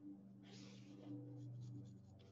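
Graphite pencil scratching on sketchbook paper while capital letters are written: a longer stroke about half a second in, then several short ones, faint over a steady low hum.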